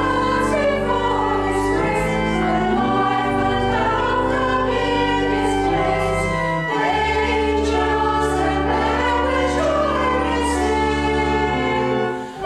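Church choir singing a carol with organ accompaniment, long-held low organ notes sounding steadily beneath the voices.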